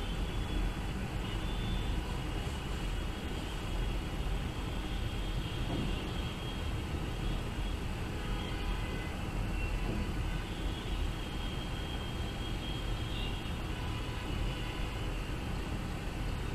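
Steady low rumble with a hiss over it, a constant background noise with faint high tones coming and going.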